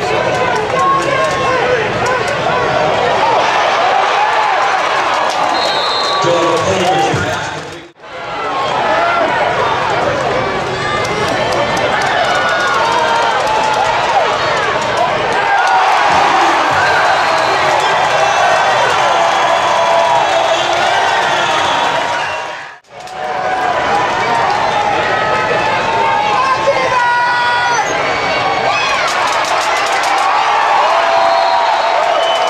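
Crowd of spectators in an indoor arena, many voices shouting and talking over one another. The sound cuts out briefly twice, about 8 seconds in and again near 23 seconds.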